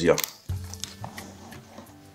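A soft thump about half a second in, then a few light clicks, as the lid of a padded fabric tool case is opened, over quiet background music.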